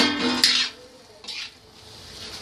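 A metal clank as the steel lid comes off the kadai, a short ringing tone, then two brief scrapes of a steel ladle in the pan of cooked chickpeas.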